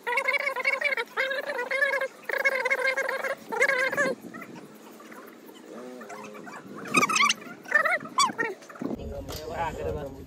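Women ululating (hulahuli) in several short, high, wavering calls through the first four seconds. Quieter voices follow, and a low rumble comes in near the end.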